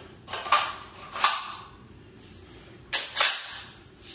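The bolt of a Daniel Defense Delta 5 bolt-action rifle being worked by hand: sharp metallic clicks and clacks, one pair in the first second or so and another pair about three seconds in.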